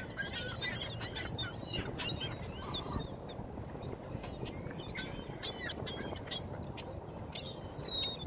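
A flock of ring-billed gulls calling, with many short high calls overlapping on and off throughout, over a low steady background rumble.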